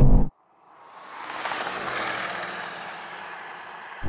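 Racing cars heard from beside the runway: a rush of noise with no clear engine note that swells over about a second and then slowly fades. It follows an abrupt cut-off of the in-car sound just after the start.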